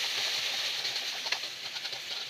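Food sizzling in hot oil in a wok: a steady hiss with a few light crackles, easing off slightly toward the end.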